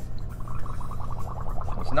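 Hydrogen–oxygen gas bubbling through a tube into a bowl of soapy bubble solution: a fast, even gurgle.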